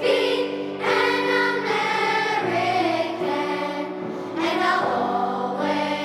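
A children's choir singing, holding long notes that change every second or so.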